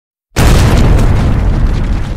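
An explosion-like boom sound effect: it hits suddenly about a third of a second in and then fades slowly in a long low tail.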